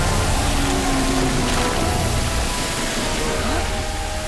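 A cartoon sound effect of goo spraying in a steady rushing gush, under a background music score of held notes.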